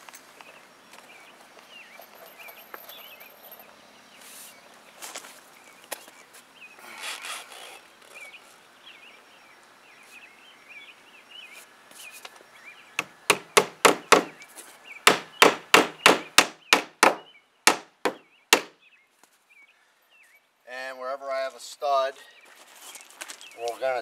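Claw hammer tacking nails through the nailing flange of a vinyl siding starter strip into a plywood shed wall. After a stretch of faint handling sounds, a fast run of hammer blows, roughly three a second, starts about halfway in and lasts about five seconds.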